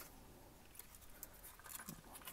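Near silence with a few faint, scattered clicks from a small screwdriver turning screws out of a 1:18 diecast model car's plastic chassis.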